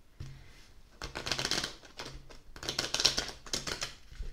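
A deck of oracle cards being riffle-shuffled twice. Each riffle is a rapid run of card clicks about a second long.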